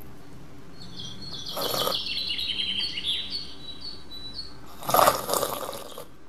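Birds chirping in a run of short, quick high notes, over a steady background hiss. Two brief rushing bursts of noise break in, the louder one near the end.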